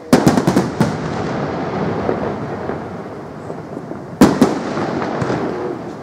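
Aerial fireworks going off: a quick string of about five sharp bangs just after the start, crackling in between, then another loud bang followed by a couple of smaller ones about four seconds in.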